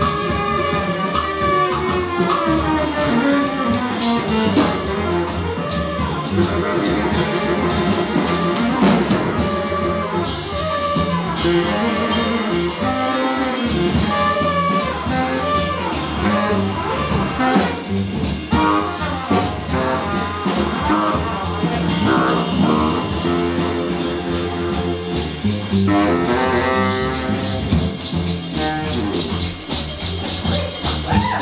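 Live jazz combo playing: trumpet over upright bass, congas and drum kit, with the trumpet dropping out partway through.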